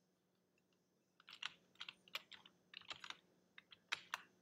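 Computer keyboard keys tapped in quick, irregular clusters, starting about a second in, as code is paged through in a text editor.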